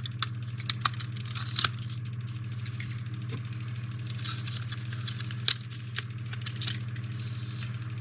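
C batteries clinking and clicking as they are handled and fitted into the plastic battery base of a jack-o'-lantern lantern. Scattered small taps, with sharper clicks in the first couple of seconds and the loudest one about five and a half seconds in, over a steady low hum.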